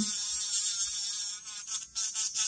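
Small electric nail-art drill pen running, its sanding barrel bit spinning against an artificial nail tip: a steady high-pitched motor whine that dips briefly about one and a half seconds in.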